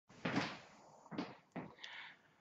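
A few short, soft knocking and scuffing noises, the first the loudest and the rest about a second and half a second apart, as a person moves in and settles down close in front of a webcam.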